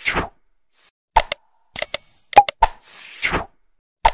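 Animated outro sound effects: sharp clicks and pops, a short bright chime, and a whooshing swish, in a pattern that repeats with short silent gaps between.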